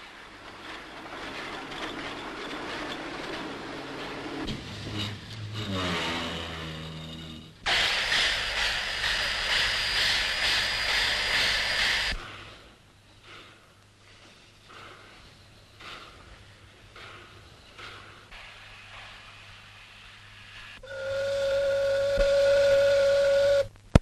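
Steam locomotive sounds: a whistle that falls in pitch about five seconds in, then a loud rush of steam for about four seconds. Near the end comes a steady whistle blast lasting about three seconds.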